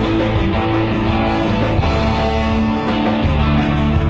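Live rock band playing loud and steady, led by amplified electric guitars.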